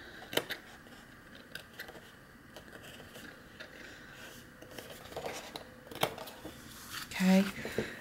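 Small fussy-cutting scissors snipping through heavy paper: a few short, sharp snips spaced a second or more apart.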